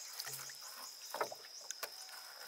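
Water dripping and splashing off a mesh fish trap as it is lifted out of the lake over the side of a small boat, with scattered small clicks and a soft knock against the hull about a second in.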